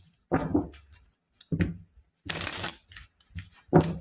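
A tarot deck being shuffled by hand, in about five short bursts of card noise, the longest and hissiest a little past halfway.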